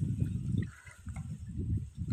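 Gusty wind rumbling on the microphone, easing about a third of the way in and picking up again, with faint splashing of water in the shallows.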